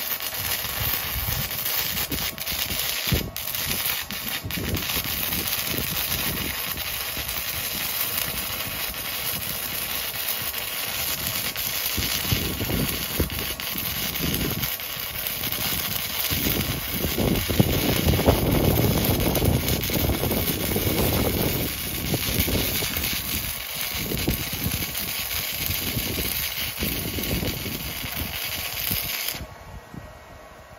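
Stick-welding arc crackling and hissing as an old 6013 rod burns at about 90 amps on DCEN into quarter-inch mild steel plate, fed by a tiny handheld stick welder. The arc breaks off suddenly just before the end.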